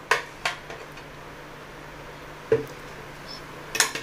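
A metal spoon clinking and scraping against a plastic blender jar and a glass bowl as a thick banana ice-cream mixture is scraped out: a few sharp clicks, a duller knock about halfway through, and the loudest clink near the end.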